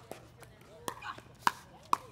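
Pickleball paddles striking the plastic ball in a fast volley exchange: sharp hollow pocks, the loudest about a second and a half in and again just before the end, with a lighter hit shortly before them.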